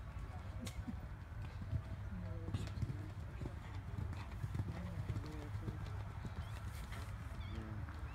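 Horse cantering on grass turf, with irregular hoofbeats and faint voices in the background.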